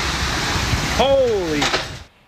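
Heavy rain and strong wind of a violent storm, recorded on a phone from a doorway as a steady loud rush. About a second in, a person's voice cries out once, falling in pitch.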